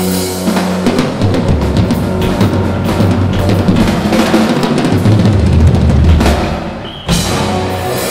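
Live rock band playing, with a Ludwig drum kit out front: dense kick, snare and cymbal hits over the bass. The sound dips briefly about seven seconds in, then the full band crashes back in.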